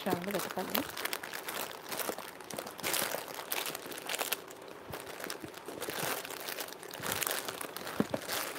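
Clear plastic jewellery packets crinkling and rustling as they are handled, in irregular crackles that come and go.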